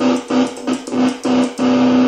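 Electric guitar played through a Marshall Reverb 12 transistor combo amp: one held note chopped on and off by the guitar's kill switch, giving a quick stutter of about seven bursts.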